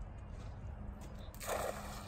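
A brief splash of water about one and a half seconds in, over a steady low hum.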